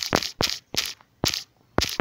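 A run of about six short, noisy key-tap sounds from a smartphone's on-screen keyboard, one for each letter typed, coming at uneven intervals of a third to half a second.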